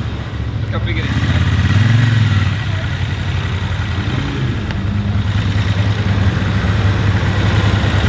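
Engines of cars and a motorcycle idling and creeping in slow street traffic, a steady low rumble.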